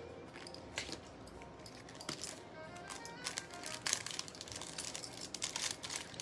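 Faint background music, with scattered light clicks and rustling from jewelry and packaging being handled on a table.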